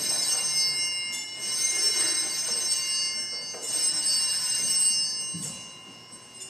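Altar bells rung at the elevation of the host after the consecration, in three shaken bursts of bright, high ringing that fade out near the end.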